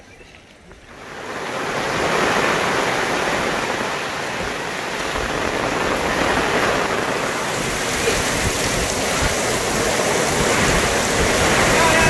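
Rain-swollen floodwater rushing steadily, a loud, even rush of flowing water that swells up about a second in and then holds.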